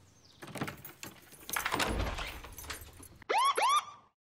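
Keys jangling and rattling in a front-door lock as the door is unlocked and opened. Near the end come two quick rising electronic whoops, a logo sound effect.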